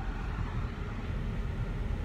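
Steady low rumble of a freight train rolling past, heard from inside a stopped vehicle's cabin.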